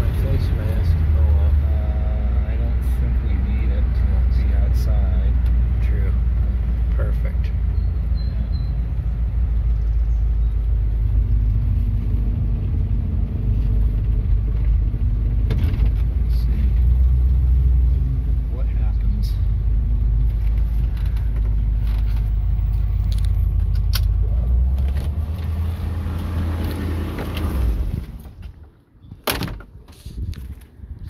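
A 1958 Edsel Citation's V8 and road noise heard from inside the car as it drives, a steady low rumble. The rumble drops away suddenly near the end.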